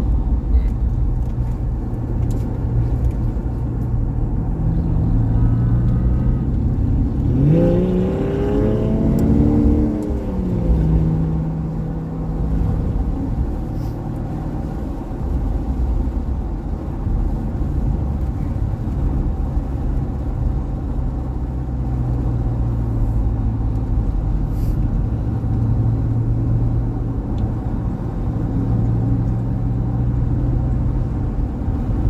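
Porsche engine and road noise heard inside the cabin at a steady, easy pace. About seven seconds in, the engine revs up with a rising pitch, then drops back after a few seconds to a steady hum.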